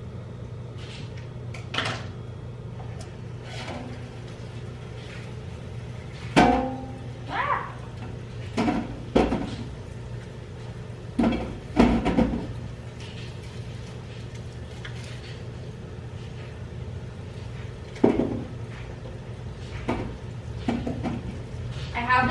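Kitchenware being handled: a strainer and bowls knock and clank against the counter several times, some with a brief metallic ring, over a steady low hum.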